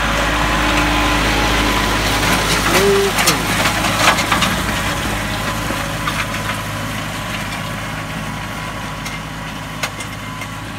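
Kioti 5310 compact tractor's diesel engine running steadily as it drags a box-blade grader over a gravel driveway, with stones clicking and crunching under the blade, thickest about two to four seconds in. The sound slowly fades as the tractor moves away.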